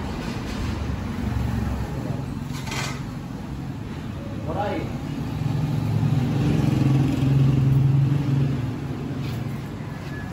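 A vehicle engine running steadily, growing louder for about three seconds past the middle before easing back.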